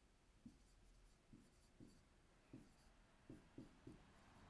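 Faint dry-erase marker writing on a whiteboard: about seven short, separate strokes, spaced unevenly, over quiet room tone.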